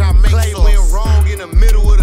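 Bass-boosted hip-hop track: rapping over very heavy bass notes that pulse about twice a second, with quick high ticks of a hi-hat.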